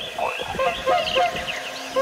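Birds calling in a forest: a run of short, low repeated notes several times a second, mixed with higher chirps and quick falling whistles.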